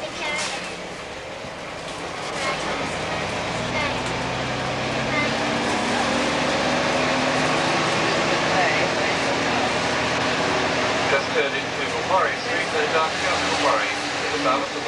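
Bus engine heard from inside the passenger cabin, its pitch climbing as the bus picks up speed from about two seconds in. Voices come in over it near the end.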